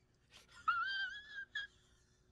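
A man's high-pitched, wavering whimper lasting under a second, starting a little over half a second in, followed by a brief squeak.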